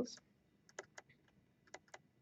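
Faint, sharp clicks of a stylus tip tapping on a tablet screen while handwriting, about four scattered ticks.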